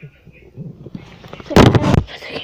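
A loud, rough rushing burst of handling noise close on the handheld camera's microphone, lasting about half a second near the end, after a brief faint vocal sound.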